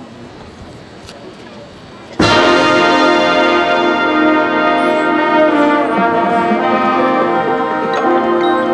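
A marching band's brass section comes in suddenly and loudly after about two seconds of quiet, playing a full chord that is held, its notes shifting slightly midway: the opening entrance of the band's field show.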